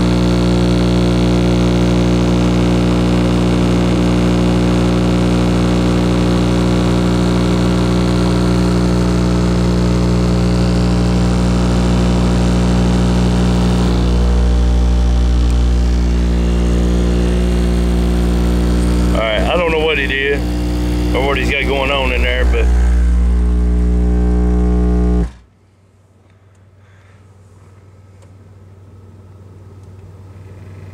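Bass-heavy music played loud through a van's car-audio system with a DC Audio Level 4 XL 15-inch subwoofer, heard from outside the vehicle. A rapped or sung vocal comes in around 19 to 23 seconds. The music cuts off suddenly about 25 seconds in.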